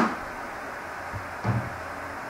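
Steady low hiss of room tone between spoken phrases, with one short soft sound about one and a half seconds in.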